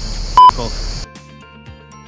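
A short, loud electronic bleep tone, a pure beep near 1 kHz, sounds about half a second in over steady outdoor background noise. About a second in the sound cuts to background music.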